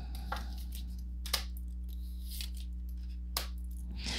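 Tarot cards being laid down on a table: a few light taps as the cards are set down, over a steady low hum.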